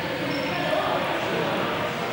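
Indistinct background chatter of voices in a large sports hall, with no clear words.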